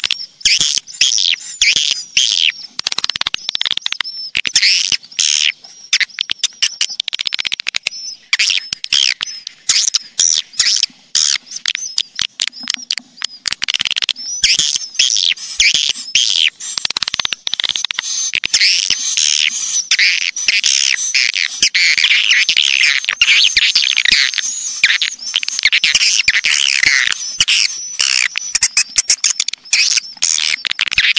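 Recorded swiftlet calls: a dense chorus of high twittering chirps mixed with rapid sharp clicks, thickening after about fourteen seconds into an almost unbroken twitter. It is a lure call played to draw swiftlets into a nesting house.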